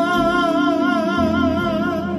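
A woman singing one long held note with a wide, regular vibrato, accompanied by sustained drawbar-organ chords; the note fades out near the end.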